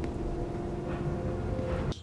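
Steady low droning hum with a few faint held tones and no sharp events: the background drone of a film's soundtrack during a quiet, tense scene.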